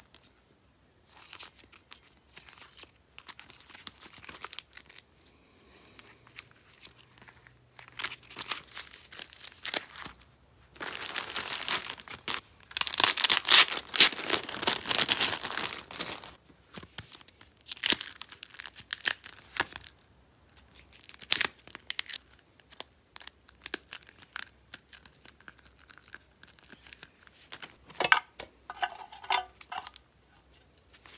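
Clear plastic sleeves and packaging rustling and crinkling in bursts as hands handle sticker sheets and cards. There is a longer, louder stretch of crinkling for about five seconds in the middle.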